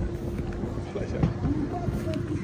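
Indistinct chatter from nearby bystanders over a low, steady rumble with a faint hum.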